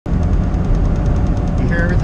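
Cab noise of a Western Star 5700XE semi truck on the road: a heavy low rumble with a fast, even rattle from the cab shaking, a shake that the shop's mechanics have not been able to trace. A voice starts near the end.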